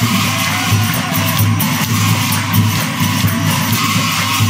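Live Ojapali devotional music: small hand cymbals clash densely and continuously over a pulsing percussion beat.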